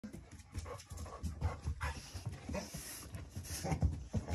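A large dog panting hard with excitement, with short taps and thuds of its paws on the floor as it moves about.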